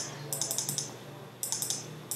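Computer keyboard keys tapped in two quick runs of clicks: repeated bracket-key presses that shrink the Photoshop brush size. A low steady hum lies underneath.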